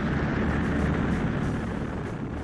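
Rocket engine at lift-off: a steady rushing rumble with a strong low end, as a V-2 climbs from its launch site.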